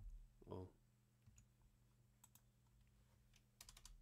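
Faint computer keyboard keystrokes: a few scattered taps, then a quick run of about six near the end.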